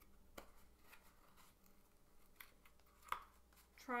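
Faint scratching and rustling of yarn warp loops being pulled off the notches of a cardboard loom, with a few sharp clicks, the loudest about three seconds in.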